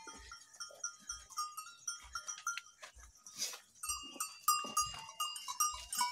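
Bells on a crowded herd of goats clinking irregularly in a pen, with soft footsteps about once a second.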